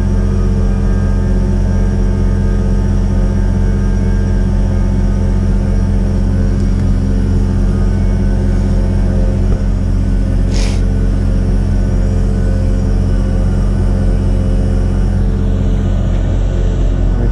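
Vacuum truck's engine and pump running steadily, pressurizing the tank to push production water out through the hoses. A short hiss about ten seconds in.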